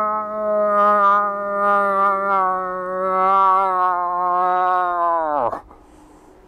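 Imitated cow moose call, as used to lure a rutting bull: one long, nasal, moaning note held at a slowly falling pitch. It ends in a sharp downward drop and cuts off about five and a half seconds in.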